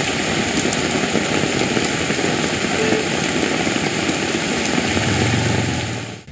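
Steady rushing noise of a river in full flood, with rain, filling the whole range from low to high. A low hum joins about five seconds in.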